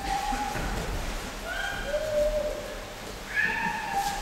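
Bare feet squeaking on vinyl-covered mats as aikidoka step and pivot: three short, high, steady squeaks, one at the start, one in the middle and one near the end.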